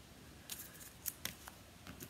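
Autographed sports trading cards being handled between showings: a few faint, light clicks and ticks.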